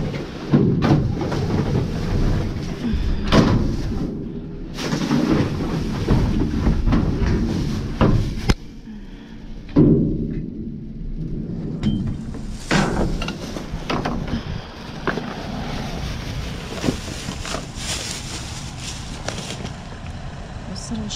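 Rummaging through trash in a metal dumpster: plastic bags and packaging rustling and crinkling, with irregular knocks and thuds against the dumpster and a low rumble.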